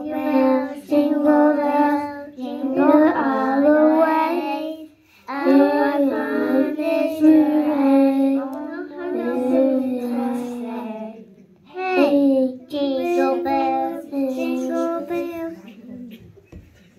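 Young children singing together into microphones, in sung phrases with short breaks between them.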